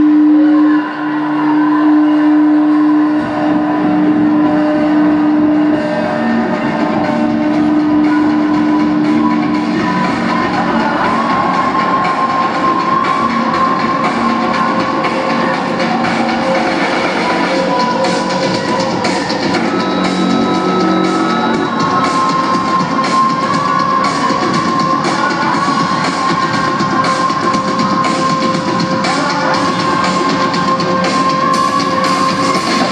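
Live rock band playing a song: a held note opens it, then drums and bass come in about three seconds in and keep a steady beat.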